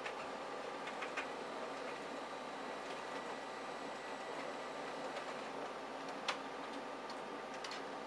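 Konica Minolta magicolor colour laser multifunction printer running a double-sided colour copy job: a steady whirr from its motors and paper feed, with sharp clicks about a second in and a few more near the end as sheets are fed and turned.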